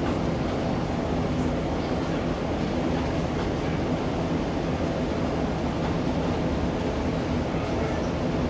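Diesel passenger train running steadily, heard from inside the carriage: an even rumble with a low engine hum underneath.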